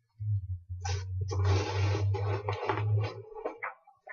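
Rustling and handling noise, as of a shopping bag and its wrapping being rummaged through, starting about a second in and fading just before the end, over a steady low hum.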